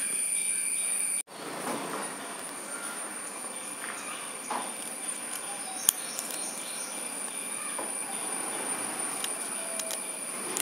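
Scissors cutting folded paper: a few faint snips and one sharp click about six seconds in, over a steady hiss with a thin high whine. The sound cuts out for a moment just after a second in.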